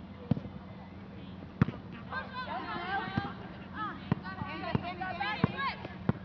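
A basketball bouncing on a gym floor, about six sharp bounces at uneven intervals, over a steady low hum. Voices of players and spectators come in from about two seconds in.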